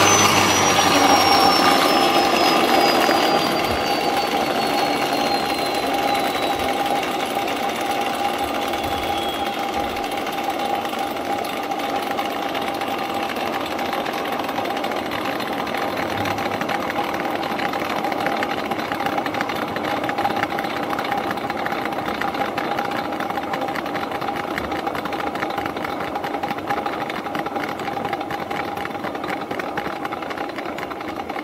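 Vintage Electrolux vacuum cleaner driving its air-powered floor polisher attachment, the brushes spinning with a steady mechanical hum. A high whine falls slowly in pitch over the first ten seconds or so, and the sound gets a little quieter a few seconds in.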